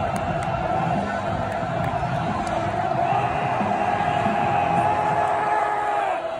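A large football stadium crowd cheering and chanting, with one steady held note sounding over the crowd noise.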